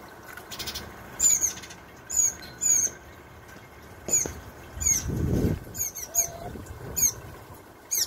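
Hooded orioles calling: a rapid string of short, sharp, high chirps, each sliding downward, coming in clusters, over the faint steady trickle of a small birdbath fountain. A brief soft rustle comes about five seconds in.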